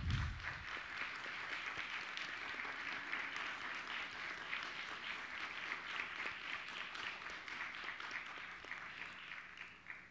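Audience applauding: many people clapping together in a steady clatter that slowly tapers off near the end.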